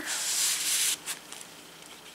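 A paper card sliding against paper as it is tucked into a journal pocket: a dry scraping rub lasting about a second, then faint light paper-handling ticks.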